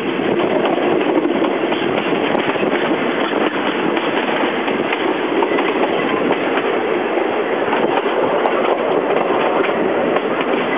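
Passenger train carriage running at speed along the track, heard from its open doorway: a steady, loud rumble and rattle of wheels on rail with faint scattered clicks.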